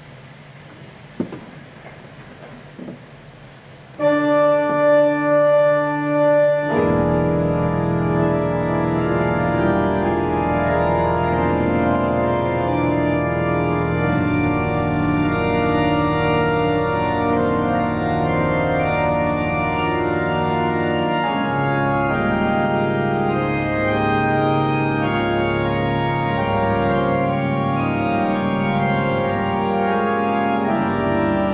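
The 1964 Balbiani Vegezzi-Bossi pipe organ. After a quiet start with a single click about a second in, a sustained chord sounds about four seconds in. It fills out with deep bass notes about three seconds later, and then carries on as a full-voiced improvisation of moving chords.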